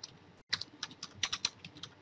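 Computer keyboard typing: a quick, irregular run of key clicks, mostly from about half a second in.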